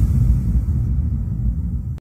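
A deep low rumble that slowly fades out, its higher part dying away first.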